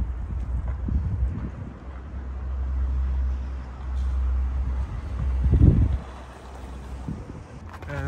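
Wind buffeting the phone's microphone: a low rumble that swells and fades, with a louder low thump about five and a half seconds in.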